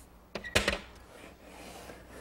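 A few short, sharp knocks close together about half a second in, against a quiet room.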